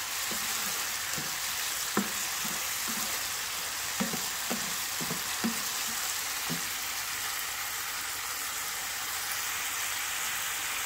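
Melinjo peel and tofu sizzling in a frying pan with a steady hiss. A wooden spatula stirs and knocks against the pan about a dozen times, stopping about six and a half seconds in, after which only the sizzling goes on.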